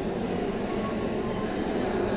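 Steady background noise with a low rumble and a hiss: the room tone of the interview recording during a pause in the talk.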